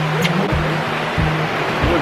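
Rushing white water of a river rapids raft ride, a steady loud hiss, under background music with a regular beat and a stepping bass line.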